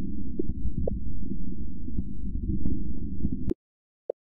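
Low rumbling drone of a virtual starship's ambient engine sound, with faint scattered clicks over it; it cuts off suddenly about three and a half seconds in.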